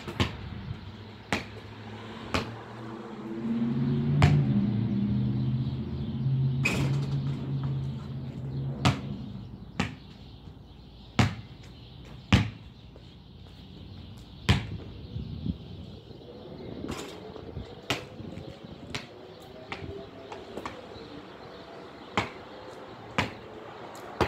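Basketball bouncing on a concrete driveway, single sharp bounces coming irregularly about every second or two. A low steady hum swells and fades between about three and nine seconds in.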